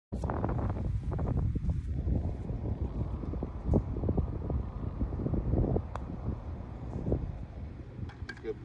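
Wind buffeting the phone's microphone, a loud fluttering rumble, with one short click about six seconds in.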